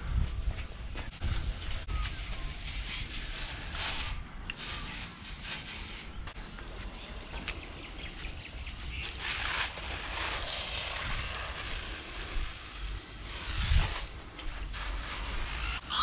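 A 5-litre hand-pump pressure sprayer spraying liquid from its wand, heard as several stretches of hiss, with scattered clicks and knocks of handling.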